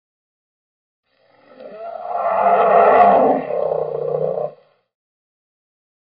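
A roar-like intro sound effect that swells up from silence about a second in, holds for a couple of seconds, and cuts off sharply well before the end.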